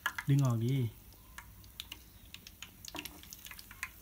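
Hot cooking oil frying a cheese stick in a small pan, giving faint, irregular crackles and pops. The slotted metal spatula stirs in the pan now and then.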